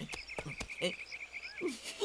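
Small animals calling in the background: a rapid trill of short high chirps, about a dozen a second, that stops about a second and a half in, with scattered lower croaking calls and a rising chirp or two.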